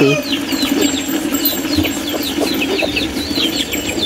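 Chickens calling in a farmyard: many short, high, falling chirps, several a second, over a steady low drone.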